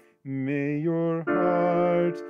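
Piano playing a D minor chord, struck just after the start and struck again a little past a second in, with a man singing the hymn's melody over it.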